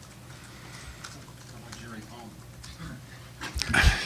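Quiet press-room tone with a low hum and faint murmuring voices, then a short, louder burst of a person's voice about three and a half seconds in.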